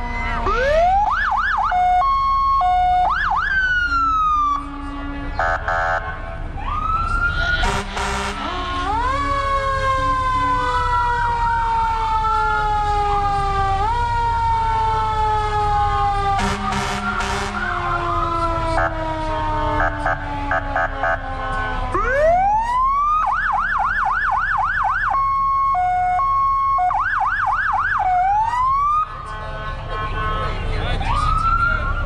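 Several emergency-vehicle sirens sounding at once, with slow rising and falling wails overlapping. A fast yelp starts about two-thirds of the way through, and short steady horn blasts come in between.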